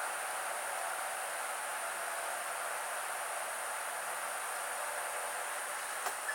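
A steady, even high-pitched hiss with no other events in it.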